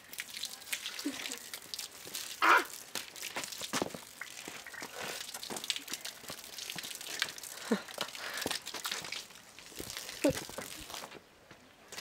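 A girl's short laugh about two seconds in, over irregular light crackling and clicking.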